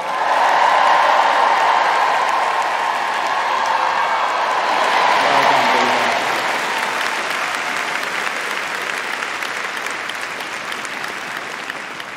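A large crowd cheering and applauding, loudest over the first few seconds and then slowly dying away.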